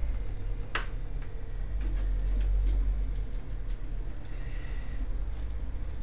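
A sharp click about a second in, then a few faint ticks and knocks over a steady low hum: a piano accordion's bottom bellows strap being unfastened and the instrument handled.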